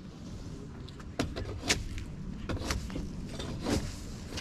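Long-handled shovel scraping across a gravel-surfaced flat roof during tear-off: a run of rough scrapes and gravel crunches starting about a second in.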